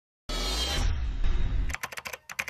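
Intro sound effect: a loud whoosh with a deep low rumble for about a second and a half, cut off near the end by quick keyboard-typing clicks as on-screen text types on.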